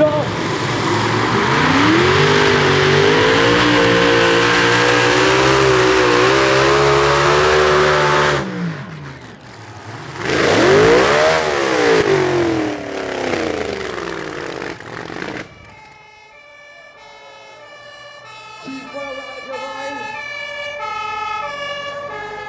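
Multi-engine supercharged modified pulling tractor at full throttle, its pitch climbing, then cutting off abruptly about eight seconds in as the run ends in a crash; a short rev rises and falls and dies away. From about sixteen seconds a two-tone siren sounds, repeating.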